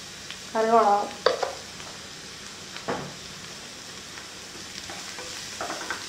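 Chopped onions and curry leaves sizzling in hot oil in a nonstick frying pan, a steady hiss with a couple of light knocks.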